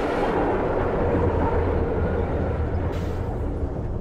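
A deep, steady rumble that swells in just before and holds, with no clear rhythm or pitch.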